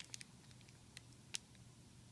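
Near silence: room tone with a few faint ticks from the cellophane bag being held, the loudest about a second and a half in.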